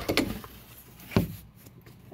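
A door being pushed shut, with a sharp thump about a second in as it closes and a lighter knock just after the start.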